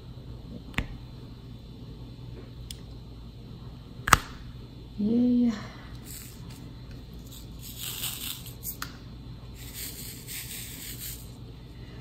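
Quiet room with a steady low hum, broken by a few sharp clicks, the loudest about four seconds in, a brief hummed 'mm' from a woman just after it, and two spells of soft hissing noise later on.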